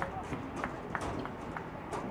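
Outdoor soccer-field ambience: indistinct distant voices over a steady noisy background, crossed by a run of short sharp taps about three a second.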